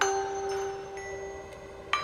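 Software music-box sound built from three layered instruments, one of them an Omnisphere patch, playing a slow melody. One note is struck at the start and another near the end, each ringing on with a bright, bell-like tone and a sharp attack.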